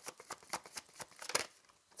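A deck of tarot cards shuffled by hand: a rapid run of soft card flicks, about seven or eight a second, that stops shortly before the end.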